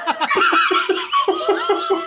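Several people laughing together over a video call, a run of quick, repeated ha-ha pulses.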